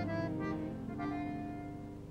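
Bandoneon and acoustic guitar playing a short instrumental passage between sung lines. The notes thin out to a single held low note that fades away.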